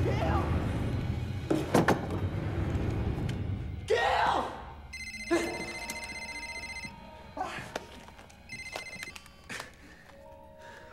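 Mobile phone ringing with a rapid, pulsing electronic ring: one long ring of about two seconds, then a shorter second ring.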